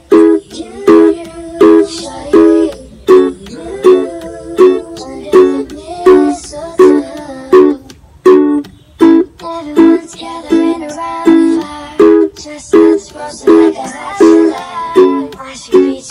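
Ukulele strumming a repeating A–E–F#m–D chord progression in a steady rhythm. Up-strums alternate with sharp percussive taps.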